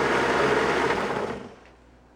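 Blendtec countertop blender running at high speed on a thick smoothie of kale, frozen blueberries, banana, dates and water, then switching off and winding down about one and a half seconds in.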